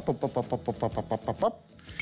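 A man's voice making a fast, even run of short repeated syllables, about ten a second, for about a second and a half.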